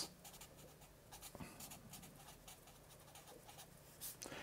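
Felt-tip marker squeaking and scratching faintly on paper in short strokes as words are written and underlined.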